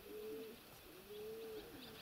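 Domestic pigeons in a dovecote cooing faintly: two low, drawn-out coos, the second longer.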